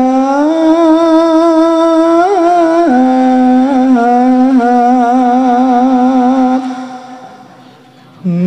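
A solo voice sings a Javanese melody unaccompanied, holding long notes with a wavering ornamented pitch. It steps up and back down, then fades out near the end.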